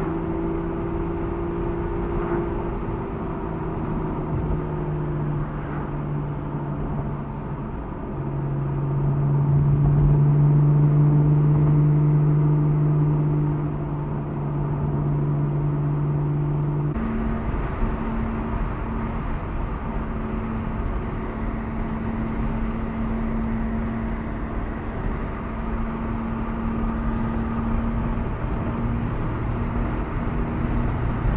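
The Aston Martin V12 Vantage S's naturally aspirated V12 running at part throttle on the move, with road and wind noise. The engine note steps in pitch a few times and swells louder for several seconds in the middle. About halfway through it changes suddenly to a steady cruising drone with more wind and tyre rush.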